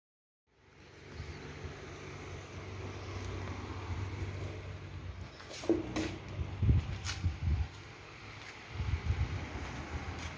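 A low steady hum, with a few sharp knocks and rustles between about five and a half and seven and a half seconds in.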